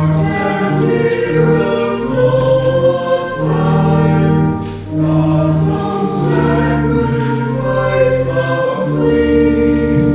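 Choir singing a slow offertory hymn in long held notes, with a short break between phrases about five seconds in.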